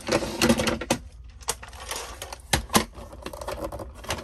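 Hard plastic clicks and knocks from a toy Mack hauler playset being handled, with a handful of sharp clicks spread irregularly among lighter rattling.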